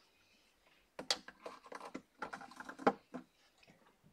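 A run of light plastic clicks and taps from markers being handled, starting about a second in and stopping shortly before the end.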